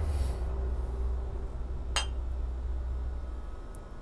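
A single light clink of crockery about two seconds in, with a brief ring, over a steady low hum.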